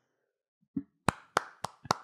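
Hand clapping, starting about a second in at about four claps a second, after a brief faint vocal sound.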